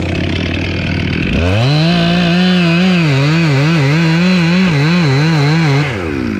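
A two-stroke gas chainsaw idles, then is revved up to full speed about a second and a half in. At high speed its pitch wavers up and down quickly, and near the end it drops back to idle.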